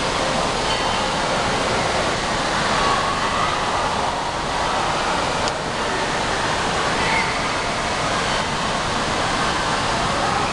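Steady rush of water in an indoor water-park pool area, with faint distant voices in the background.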